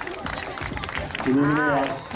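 Mostly speech: one short exclaimed word near the end, rising and falling in pitch, over the steady background noise of an outdoor crowd.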